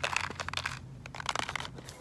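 Hands handling small objects: a scatter of light crinkles and clicks, busiest in the first part and thinning out towards the middle.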